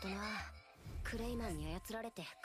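Speech only: a character's voice in the anime episode's dialogue, in Japanese, playing back quieter than the reactors' talk. It comes in two phrases, the second about a second in.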